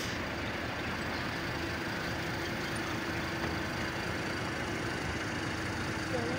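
Steady outdoor background noise, with a faint steady hum that comes in about a second and a half in.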